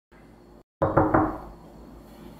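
Three quick knocks on a door, starting about a second in and fading briefly after the last.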